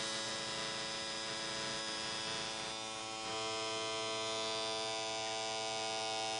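Electric tattoo machine buzzing steadily while held to the skin, a little louder after about three seconds.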